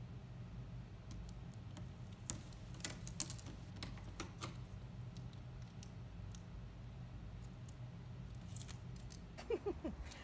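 Scattered light clicks and snips of hands working double-sided tape onto a plastic ruler and cutting it with scissors, over a steady low hum.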